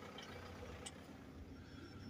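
Faint low rumble of a vehicle, heard from inside the cab, with one small click a little before the middle.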